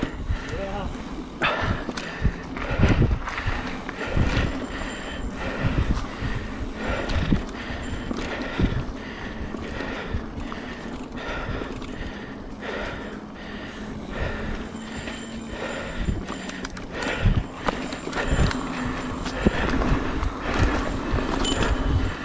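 Mountain bike ridden along a leaf-covered dirt trail: tyres rolling with frequent knocks and rattles as the bike goes over bumps, over a steady low hum.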